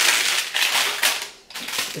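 A pack of scented wax pearls crinkling and rustling as it is handled. The rustle stops about a second and a half in, with a little more just before the end.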